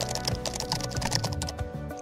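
Quick, continuous clicks of typing on a keyboard over background music with steady held notes.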